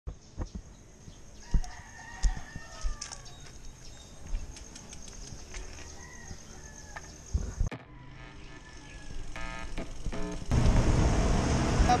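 A few distant animal calls that rise and fall, over low background noise, with scattered sharp knocks. About ten seconds in, a louder steady rush of noise takes over.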